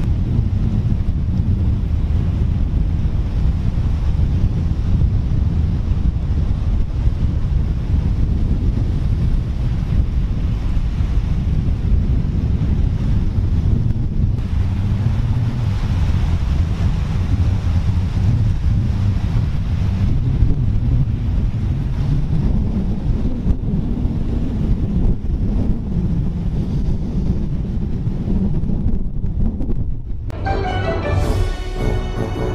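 Wind buffeting an outdoor microphone over surf washing onto a beach, a steady loud rumble.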